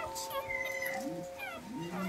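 Newborn puppies giving a few faint, high-pitched squeaks and whimpers, short wavering and falling cries.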